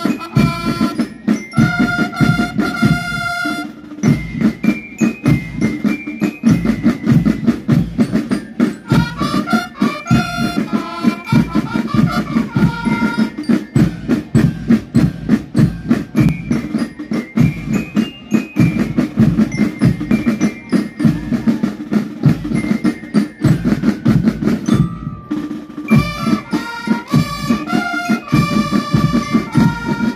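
A Chilean banda de guerra, a military-style marching band of snare drums, bass drums and bugles, playing. The drums keep a fast, steady beat throughout, and the bugles come in over them with several phrases. A short break in the playing falls about 25 seconds in.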